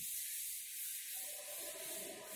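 Chalkboard duster rubbing chalk numbers off a blackboard in repeated scratchy strokes.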